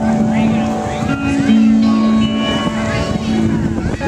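Live rock band on a stage playing a sparse opening of long held low notes that change pitch every second or so, with people talking near the microphone over it.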